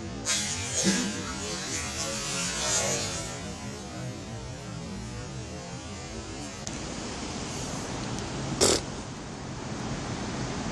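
A released bass drops from a wall and splashes into the river about a second in. Rustling and handling noise from the camera being moved follows, with a short sharp knock near the end.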